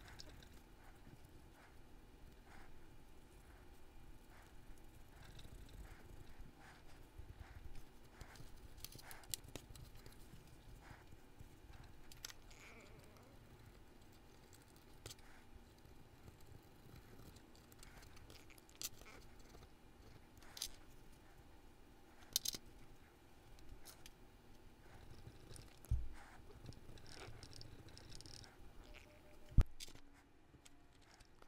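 Faint rustling of a paper towel rubbed over small greasy metal parts of an HO-scale model streetcar, with scattered light clicks of the parts being handled and a few sharper taps in the second half.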